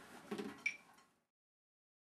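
A faint dull knock and then a short, sharp click with a brief high ring, after which the sound cuts off to dead silence about a second in.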